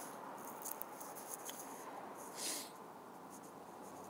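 Quiet outdoor background with faint rustling and small ticks, and one short breathy hiss about two and a half seconds in.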